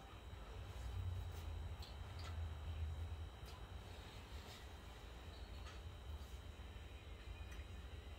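Faint chewing of a soft mouthful of stuffed bell pepper, with a few soft clicks over a low steady room hum.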